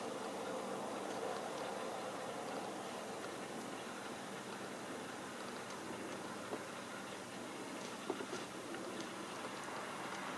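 Steady low hiss and hum of room tone, with a few faint clicks about six and a half and eight seconds in.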